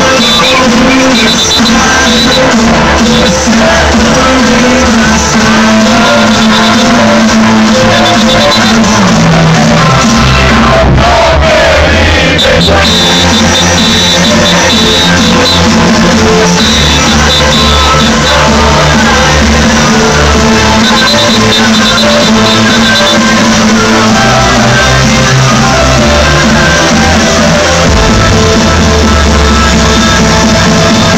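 Loud dance music from a DJ set, played over a nightclub sound system and picked up by a phone microphone, with a heavy bass line. About eleven seconds in, the beat drops out briefly under a falling sweep, and the bass comes back about two seconds later.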